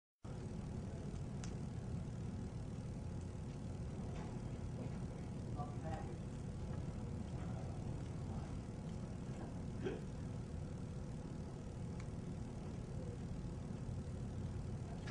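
Steady low rumble of background noise, with faint murmuring voices and a few soft clicks.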